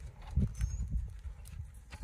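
Hoofbeats of a horse on soft arena sand, a muffled uneven thudding as it moves from a walk into a jog, under a low rumble.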